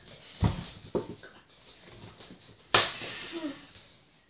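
Two dull thumps about half a second and a second in, then a loud breathy vocal outburst from a child just before three seconds, all amid movement in a small room.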